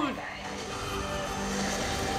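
Movie trailer soundtrack playing in the background, held music notes over a low bed of effects, just after a man's shout falls away at the start.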